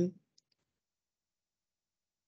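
The end of a spoken word, then two faint small clicks and dead silence.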